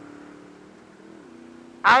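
Honda VFR800's V4 engine running at steady cruising revs, faint under a steady hiss, with a brief rise and fall in pitch about a second in. A man's voice starts near the end.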